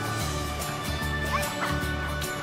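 Background music with a steady beat and a bass line. A couple of short, high gliding calls come about halfway through.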